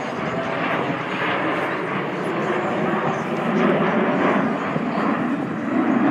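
Jet noise from Blue Angels F/A-18 Hornets passing, a loud steady rush that swells louder in the second half.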